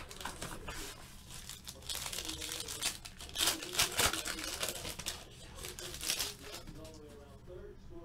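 Foil trading-card pack wrapper being torn open and crinkled by hand: a run of crackling tears and rustles, busiest from about two to six seconds in.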